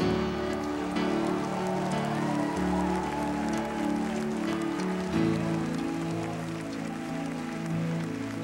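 Church worship band playing soft, sustained keyboard chords, the chord changing about every two and a half seconds.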